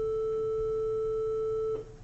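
A steady electronic tone held at one pitch, cutting off suddenly near the end.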